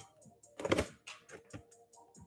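Scissors slicing through the tape seal on a cardboard toy box: one short rasping cut a little over half a second in, followed by lighter scraping and handling of the box.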